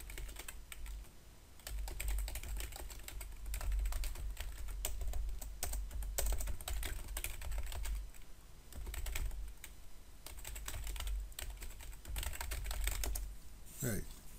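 Typing on a computer keyboard: quick runs of keystrokes with two brief pauses.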